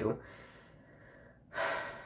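A pause in a young man's speech: quiet room tone, then about one and a half seconds in, a short, sharp intake of breath through the mouth as he gets ready to speak again.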